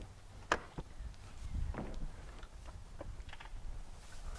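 Latch on the hinged side hatch of an enclosed car trailer being released and the hatch swung up: a sharp click about half a second in and a softer one just after, then low rumbling.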